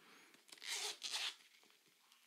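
Two short scratchy noises, close together, as the lid of a small round metal tin is worked open.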